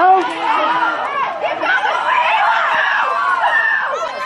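Many people yelling and chattering at once: spectators and players shouting, several high-pitched voices overlapping, loudest around the middle.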